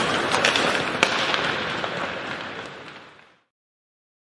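Logo-intro sound effect: a burst of crackling noise with scattered sharp pops, fading away and gone about three and a half seconds in.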